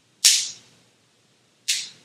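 Two crisp snaps about a second and a half apart, each dying away quickly: a large priest's communion wafer being broken at the fraction of the Eucharist.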